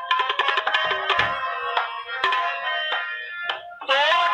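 Instrumental passage of Sikh kirtan: harmonium holding steady notes under rapid tabla strokes, with the singer's voice coming back in at the very end.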